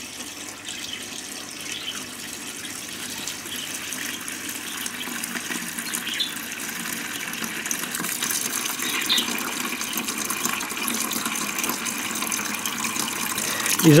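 Aquarium water siphoning through a JBL AquaEx gravel cleaner's hose and running into a bucket: a steady stream of running water that grows slowly louder.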